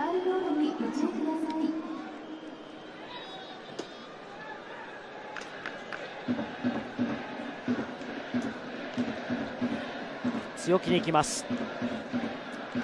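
Baseball stadium crowd ambience. From about six seconds in, a cheering section keeps up a steady rhythmic beat. Near the end a louder voice breaks in as the announcer begins calling a hit to centre field.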